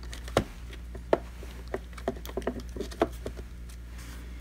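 Scattered clicks and taps of hard plastic as a battery is plugged into a robot vacuum and set in its bay, the sharpest click about a second in.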